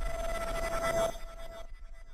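The fading tail of an electronic logo jingle: a steady, ringing synth tone with reverb that dies away over the second half.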